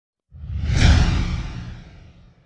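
A whoosh sound effect for a title-card reveal, with a deep rumble under a hissing sweep. It swells up quickly just after the start, peaks about a second in, then fades away.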